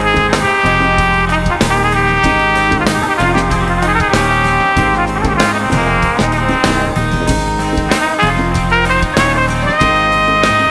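A live band playing an instrumental passage with no vocals: a brass horn, trumpet-like, carries sustained melody lines over drums and bass.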